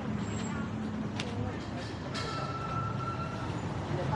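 Busy street ambience: a steady low rumble of traffic with people talking in the background. A sharp click comes about a second in, and a thin steady tone lasts about a second from just after the two-second mark.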